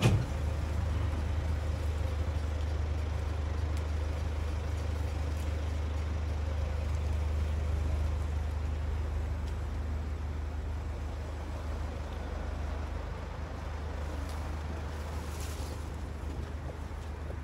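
A motor vehicle's engine idling close by, a steady low rumble, with one sharp knock right at the start.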